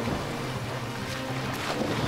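Swimming-pool water splashing as people fall in and thrash about, under background music with steady held low notes.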